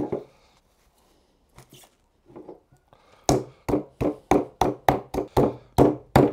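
Metal meat mallet pounding a bone-in pork chop through cling film on a wooden board: a steady run of blows, about three a second, starting about three seconds in.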